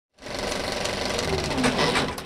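A fast, loud mechanical rattle, like a small machine running, that starts abruptly just after the start.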